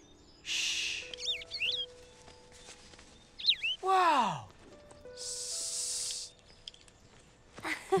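Soft background music with short bird chirps from a cartoon cardinal, a few about a second in and more around three and a half seconds. A falling whistle-like glide follows just after, and there are two brief bursts of hiss, one near the start and one around five to six seconds.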